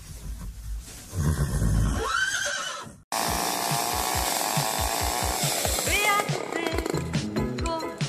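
A horse whinnying, one arched call a little over two seconds in, over a low rumble. After a sudden break just past three seconds, background music with a steady beat takes over.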